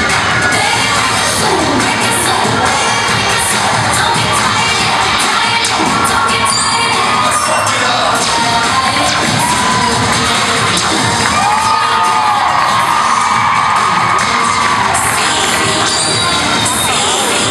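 A crowd cheering and children shouting during a youth cheerleading routine, a continuous din with the routine's music faintly underneath.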